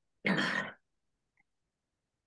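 A man clearing his throat once, a short harsh burst lasting about half a second.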